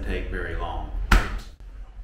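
A man speaking briefly, then one sharp bang about a second in.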